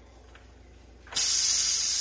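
Pressure cooker venting steam through its valve: a loud, steady hiss that starts suddenly about a second in. The pressure is being let out so the lid can be taken off.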